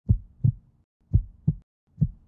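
Heartbeat sound effect: deep lub-dub double thumps, two beats about a second apart.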